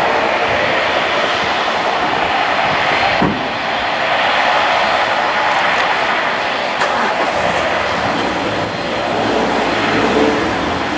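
Bombardier Dash 8 Q400's Pratt & Whitney PW150A turboprop engines and propellers running steadily at taxi power as the airliner rolls along the runway.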